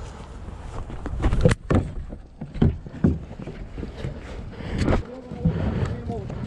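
Low wind and handling rumble on a moving action camera, with footsteps and irregular sharp knocks about once a second, the loudest about one and a half seconds in.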